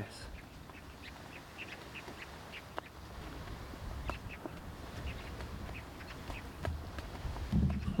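Quiet open-air ambience: short bird calls come and go over a low wind rumble on the microphone, with one faint click about three seconds in.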